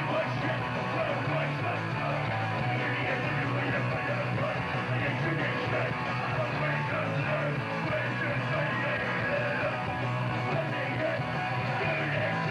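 A New York hardcore punk band playing live: distorted electric guitar, bass and drums going at a steady level.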